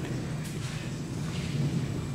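Steady low hum and hiss of background room noise, with a faint click about half a second in.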